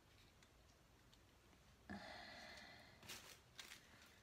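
Near silence: room tone, with a faint steady tone lasting about a second midway and a brief faint rustle and click near the end.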